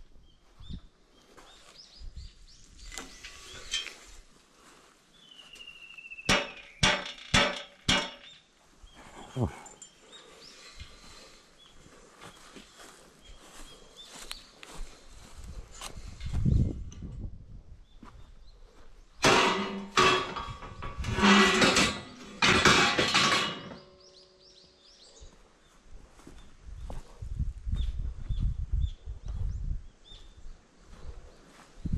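Steel scaffold pipes knocking and clanking with a metallic ring as they are carried and handled: a quick run of four or five knocks, then later a longer burst of clattering.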